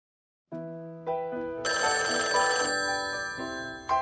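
A telephone ringing amid music, a series of sustained notes coming in one after another, with the brightest stretch in the middle; it is the Night Action line about to be answered.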